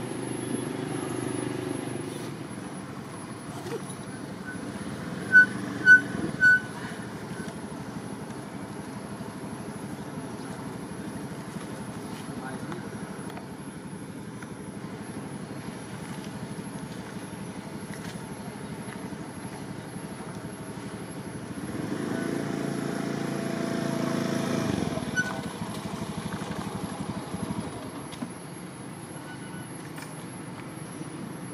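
Outdoor background noise with faint distant voices and traffic; about five seconds in, three short high beeps sound about half a second apart, and a vehicle passes, swelling and fading, about three-quarters of the way through.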